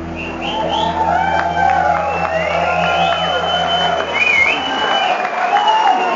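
A live soul band's final held chord rings out and stops about four seconds in, under a crowd cheering and applauding.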